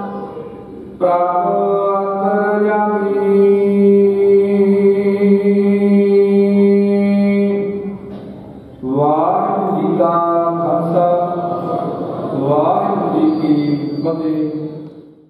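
A man chanting gurbani in long, drawn-out held notes. After a short break just past the middle, the melody moves and wavers until the end.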